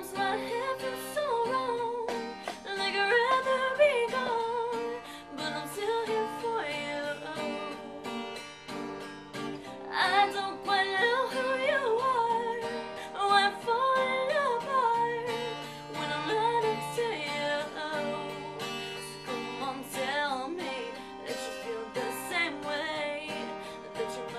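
A woman singing while strumming an acoustic guitar: a solo voice-and-guitar song.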